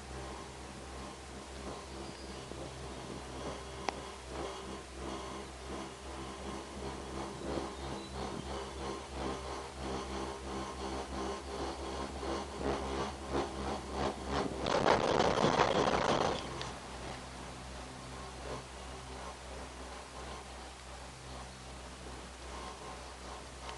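Gondola cabin of the Genting Skyway cable car in motion: a steady low hum with light ticks and rattles that come thicker toward the middle. About fifteen seconds in, a louder rushing noise swells for a second or two, then drops back.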